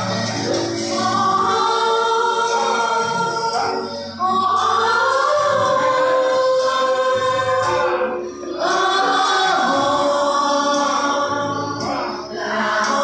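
A mixed group of men and women singing a song together, with short breaks between phrases about four and eight and a half seconds in.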